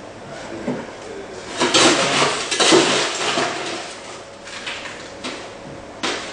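Clatter and scraping of bar utensils and glassware being handled on a bar counter, loudest about two to three seconds in, then a few lighter knocks.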